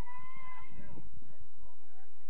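A player's long, high-pitched shout on the pitch, held for under a second and rising slightly at its start, with other voices calling on the field around it.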